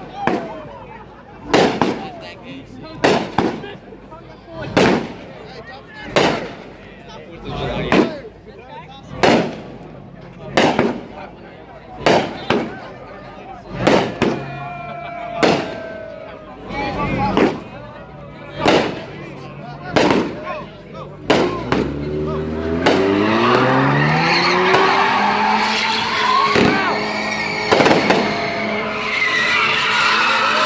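A fireworks cake firing a long run of single shots, one about every second and a half. About 22 s in, a car's engine revs up, and then its tyres squeal continuously as it spins, loud over crowd cheering.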